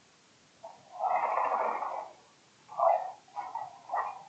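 A person's breathy, whispery voice: a long breath sound lasting about a second, then a few short breathy bursts that run into whispered speech.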